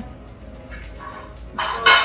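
A woman's sudden loud, high-pitched shriek of laughter near the end, after a quieter second and a half.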